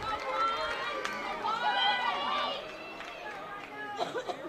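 Ballpark ambience at a baseball game: several distant voices of players and spectators calling and chattering over each other, faint against the open-air background.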